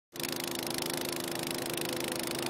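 Walk-behind snowblower running steadily as it throws snow, an even engine drone with a hiss over it.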